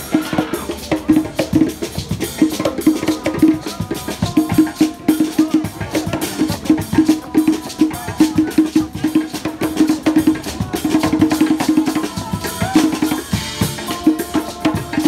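A live band plays a busy, rhythmic groove: electric and bass guitars over a drum kit and hand drums, with a steady, fast beat.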